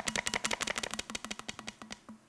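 Plastic water bottle crackling as it is handled and squeezed: a rapid run of crisp clicks, about a dozen a second, that thins out and fades near the end.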